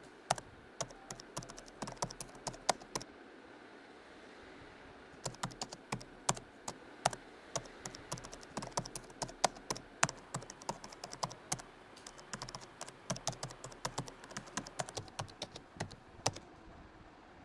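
Typing on a laptop keyboard: a run of irregular key clicks, a pause of about two seconds a few seconds in, then fast, steady typing.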